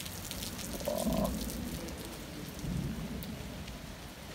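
Heavy rain falling steadily, with many close drops pattering near the microphone. Two low rumbling swells rise over it, the louder about a second in and another near three seconds.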